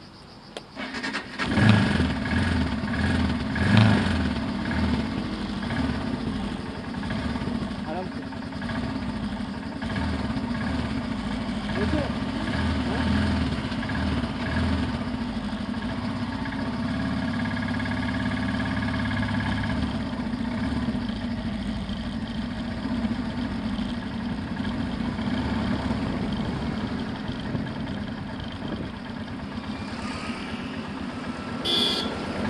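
Motorcycle engine starting about a second and a half in and blipped twice, then running steadily.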